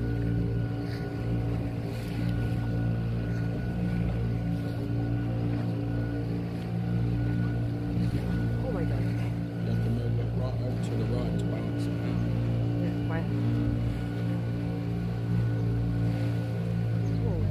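Small wooden tour boat's inboard engine running at a steady cruising speed, a low, even hum.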